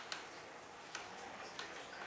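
A few faint, irregular clicks and ticks, unevenly spaced, over quiet room tone.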